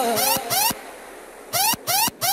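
Hardtek electronic music: short repeated stabs of a rising synth sweep, broken by a quieter gap of about a second in the middle.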